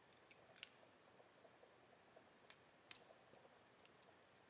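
Near silence broken by a handful of faint, sharp clicks as the clear plastic tube holding the airbrush's spare 0.5 mm needle is handled. The loudest click comes about three seconds in.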